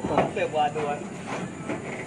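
Indistinct low voices with a few light knocks and clatters in the first second, from a man shifting his weight on clay roof tiles and corrugated roof sheeting; the rest is quieter.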